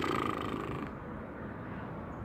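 A woman's low, buzzy closed-mouth groan, lasting about a second and then fading into steady background noise: a sound of dismay.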